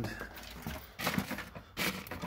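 Handling noise as tools are rummaged in a plastic bucket: short bursts of scuffs and clatter, about a second in and again near the end.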